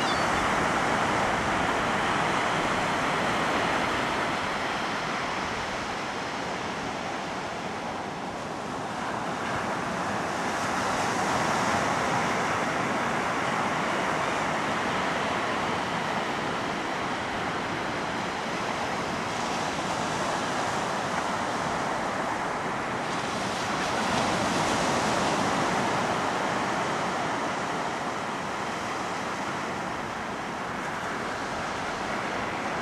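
Ocean surf breaking on a beach: a steady wash of noise that swells and eases in slow surges as the waves come in, loudest about twelve and twenty-five seconds in.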